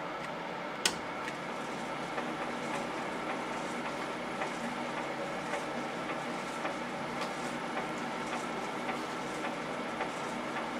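Warco WM250V lathe starting at its slowest speed: a sharp click about a second in, then the bare spindle turning with a steady motor hum and a faint regular tick about twice a second.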